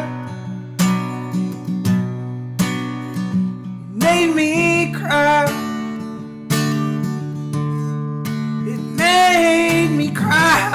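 Acoustic guitar, capoed, strummed in chords that ring between strokes, with a man's voice singing a phrase about four seconds in and again near the end.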